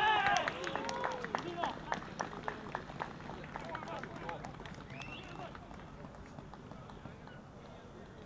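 Footballers shouting in celebration of a goal, several voices at once, loudest at the start, with running footsteps and many short sharp taps among them. The shouting dies down after about three seconds, with one more shout about five seconds in.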